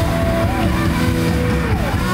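Live rock band playing, led by electric guitars, with held guitar notes bending in pitch and a note sliding down near the end, over bass and drums.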